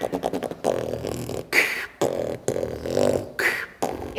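Voices making beatbox-style mouth percussion and vocal sounds in a choppy rhythm, with two short hissing sounds, the first about a second and a half in and the second near the end.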